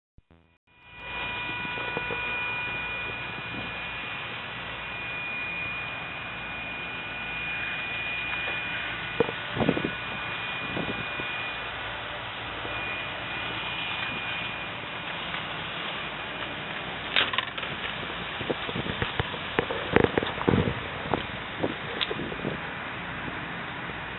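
Toyota Sequoia's 4.7-litre V8 running steadily with the hood open, a constant hum with a thin high whine over it. Short knocks and rubs from the camera being handled come near the end.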